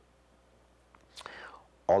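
A pause in a man's speech: about a second of faint room tone, then a soft audible in-breath, and his voice comes back in with a word near the end.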